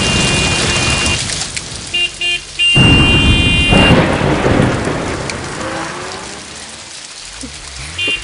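Heavy rain with a loud thunderclap about three seconds in, its rumble fading away over the next few seconds.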